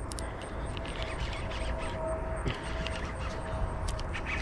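Baitcasting reel being cranked against a heavy fish partly buried in weeds: a steady whir with faint ticking throughout.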